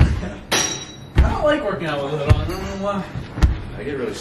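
Thuds about once a second, with a person's voice talking under them. A brief high clink comes about half a second in.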